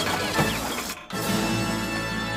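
Cartoon sound effects with quick pitch glides and a clattering rattle over the film score. It breaks off briefly about a second in, then the score resumes with a held chord.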